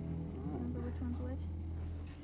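Night insects such as crickets trilling in one steady high, fine-pulsed note, over low background music that fades away, with faint voices about half a second to a second in.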